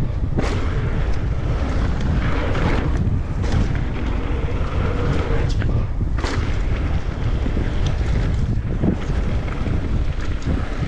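Wind rushing over the microphone of a mountain bike's camera, over the rolling rumble of tyres on a loose gravel trail, with a few sharp clicks and rattles from the bike over bumps.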